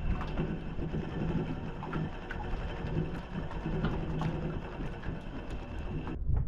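Fishing reel being cranked to retrieve a lure, heard up close through a camera mounted on the rod, with a low rumble and many small handling clicks and ticks.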